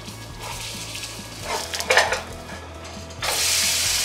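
A metal spatula scrapes under a plant-based burger patty frying in oil in a nonstick pan and flips it, with a few short scrapes and clatters. About three seconds in, a loud sizzle starts as the raw side meets the hot oil.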